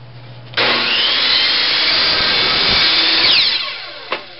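Black & Decker Quantum Pro chop saw switched on about half a second in, its motor whining up to speed as the blade cuts through 3/4-inch CPVC pipe. Near the end it is switched off and the blade winds down with a falling whine.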